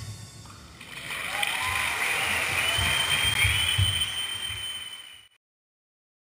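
Theatre audience applauding and cheering at the end of a dance performance, building about a second in and cut off abruptly about five seconds in.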